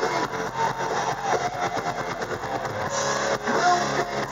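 Live hard rock band playing: electric guitar over bass guitar and drums, a steady loud instrumental passage.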